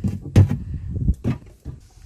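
Several sharp knocks and clicks of hard plastic being handled, the loudest about half a second in: a screw-on rubber teat fitting being worked off a white plastic multi-teat piglet feeding bottle.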